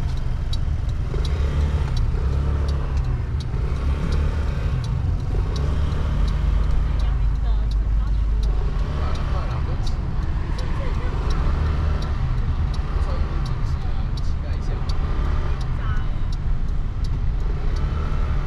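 Steady low road rumble of a moving car heard from inside the cabin, with scattered light clicks.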